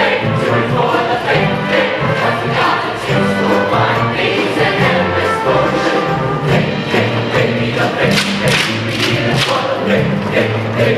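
Mixed-voice show choir singing an up-tempo number over instrumental backing with a steady beat and a repeating bass line.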